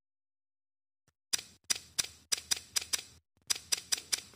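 Google Pixel 2 camera shutter sound from the phone's speaker, repeating in quick succession at about four snaps a second as pictures are taken one after another with no shutter delay. The snaps start about a second and a half in and pause briefly near the three-second mark.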